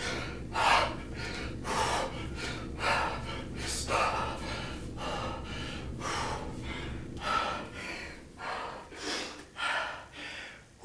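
A man breathing hard with sharp, gasping exhales about once a second, in time with two-handed kettlebell swings. Near the end the breaths come a little closer together.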